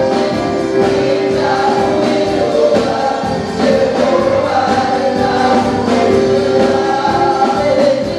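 Live gospel praise-and-worship music: a group of singers led by one voice, over a drum kit keeping a steady beat and a keyboard.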